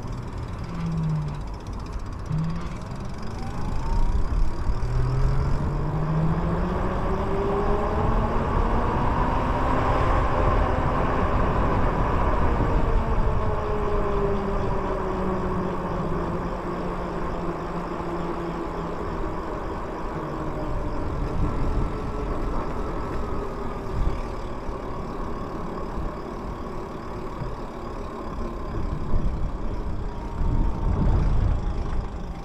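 Lyric Graffiti e-bike's electric motor whining as it rides, the pitch rising as it speeds up and falling as it slows, with wind and tyre rumble underneath.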